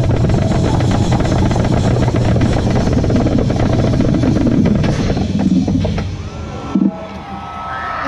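Marching band playing loudly, drums and horns together, the music dying away about six seconds in. A single sharp hit follows near the seventh second, then voices near the end.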